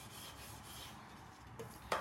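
Faint, steady rubbing of a plastic cake smoother buffed lightly over the sugarpaste covering on the side of a cake dummy.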